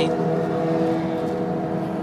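Car cabin noise while driving: a steady engine hum with road noise, heard from inside the car.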